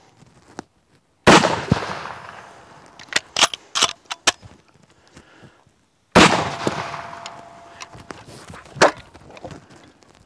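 Two shots, about five seconds apart, from a Mosin-Nagant bolt-action rifle cut down to a ten-and-a-half-inch barrel. Each is a sharp crack with a long echoing tail. Between the shots and after the second come short metallic clicks as the bolt is worked.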